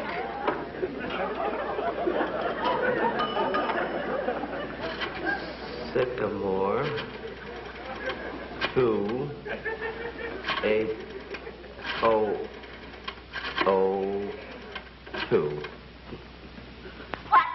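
Studio audience laughter at the start, then a single voice making short, separate sounds that rise and fall in pitch, with no clear words.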